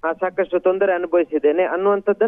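Speech only: a man reporting in Kannada over a telephone line, the voice thin and cut off at the top like a phone call.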